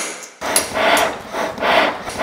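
Hand hammer striking a metal strip held in tongs on a small anvil: a rhythmic run of blows, roughly two a second.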